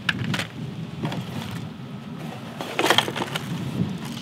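Hands handling a fishing lure in its clear plastic blister pack, giving a few sharp plastic clicks and knocks, once at the start, again about half a second in and a small cluster around three seconds in, over a steady low rumble.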